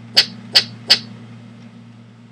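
Three sharp mouse clicks about a third of a second apart, with a steady low hum underneath.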